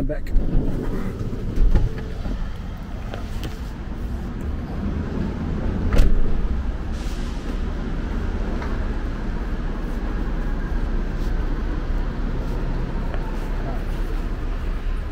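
Passenger van driving, with a steady low engine and road rumble heard from inside the cabin, and a single sharp knock about six seconds in.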